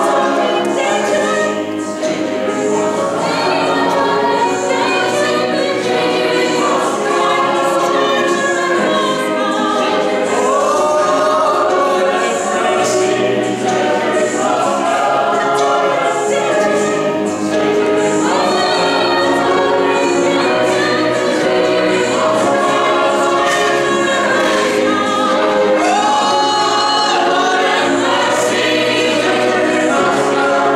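Mixed choir of men's and women's voices singing, with several voice lines at once and no break.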